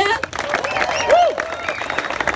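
Crowd applauding, with a voice calling out briefly about a second in.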